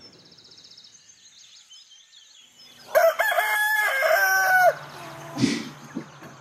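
A rooster crowing once, a cock-a-doodle-doo lasting about two seconds that starts about three seconds in, over faint chirping of small birds. A short bump follows about a second later.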